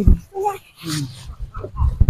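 Short, broken voice sounds with no clear words, a few brief pitched cries with gaps between them, over a low rumbling noise.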